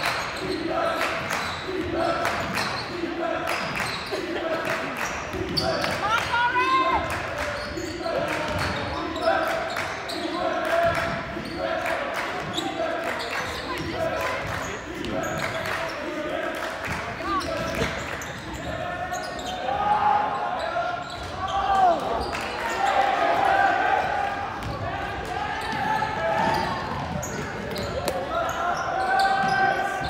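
Basketball bouncing on a hardwood gym floor during live play, with many short impacts, against a steady background of spectators' and players' voices echoing in a large gymnasium.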